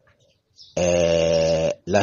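A man's voice holding one flat-pitched vowel for about a second, a drawn-out hesitation sound between phrases; it starts after a short silence and breaks off just before his speech resumes.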